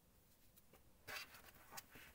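Near silence, with a faint brief rustle about a second in and a few soft scuffs after it: hands handling a crocheted cotton-yarn pouch while knotting its drawstring ends.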